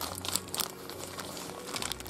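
Thin plastic blind-bag packaging crinkling as hands pull a small toy doll out of it, in irregular crackles.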